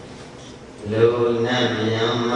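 A Buddhist monk's voice over a microphone: after a short pause he starts chanting about a second in, on a steady held pitch.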